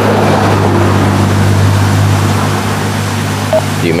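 Steady low mechanical hum under an even rushing noise, as from an engine or machine running nearby. Near the end there is a short beep, the GPS unit's touchscreen tone as a thumb reaches for the screen.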